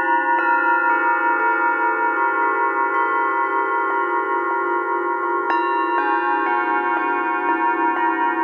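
A matched diatonic set of antique cup singing bowls struck one after another with a mallet, playing a slow melody. Each note rings on and overlaps the next, and the low tones waver.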